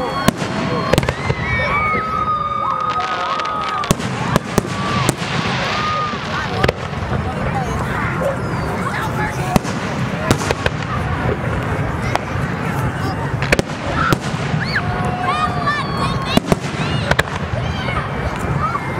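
Aerial fireworks shells bursting in the sky: about a dozen sharp bangs at irregular intervals, some close together, over the steady chatter of nearby spectators.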